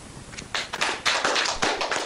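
A short round of applause: a dense patter of hand claps starting about half a second in, which breaks off at the end.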